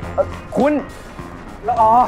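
Short, surprised vocal exclamations, three brief rising-and-falling calls, over steady background music.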